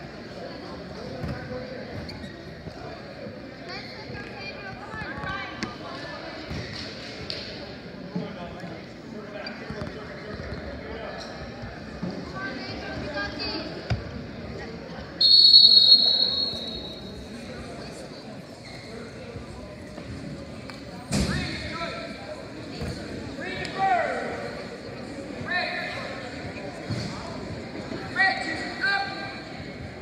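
Gym ambience during a wrestling match: background voices, with knocks and thuds from bodies and feet on the mat. A referee's whistle is blown once, loud and steady for about a second and a half, just past the middle. A sharp thud follows about five seconds later, and shouts come near the end.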